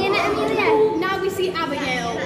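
Children's voices: kids talking and calling out over general chatter.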